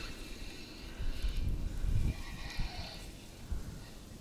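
Gusty wind buffeting the microphone in uneven low rumbles, with a few faint higher-pitched sounds in the middle.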